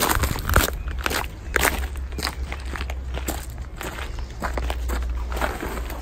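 Footsteps crunching on gravel, roughly two steps a second, over a steady low rumble.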